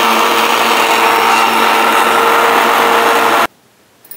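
Electric kitchen blender running steadily, blending yogurt, water and mint into lassi; it cuts off suddenly about three and a half seconds in.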